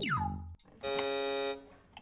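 Electronic buzzer sound effect of the show's red button being pressed to end the date: a quick falling synth swoop, then a steady buzz lasting under a second.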